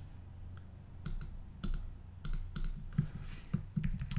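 Irregular light clicks and taps on a computer keyboard, about ten of them starting about a second in, over a faint steady low hum.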